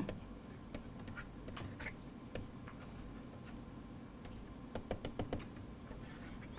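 Faint light taps and scratches of a stylus on a tablet screen while a diagram is drawn by hand: scattered small clicks, bunched about a second before the end.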